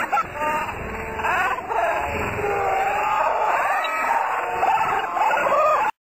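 Excited, high-pitched voices of people calling out without clear words, cutting off suddenly near the end.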